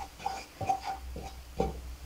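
A wooden spatula scraping and pushing a crumbly butter-and-flour roux around a nonstick frying pan, in short strokes a few times a second.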